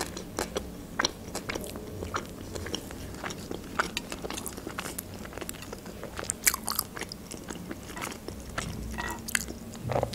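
A person chewing a mouthful of fried-chicken tortilla wrap close to the microphone, heard as a run of small irregular mouth clicks and crunches.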